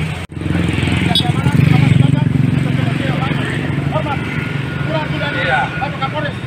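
A motor vehicle engine running close by, a steady low rumble that is loudest about two seconds in, with scattered crowd voices over it.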